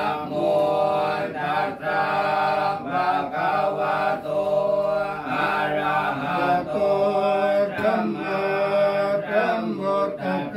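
Thai Buddhist monks chanting in Pali, a continuous recitation held on steady, level pitches and broken into short phrases.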